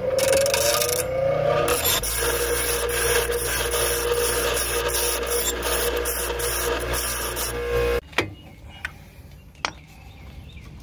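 Bench-top grinder grinding a bevel (chamfer) onto the edge of a control-arm bushing so it will start into the axle's bore: a rising whine over the first couple of seconds, then a steady grinding rasp with a low hum that cuts off suddenly about eight seconds in, followed by a few light clicks.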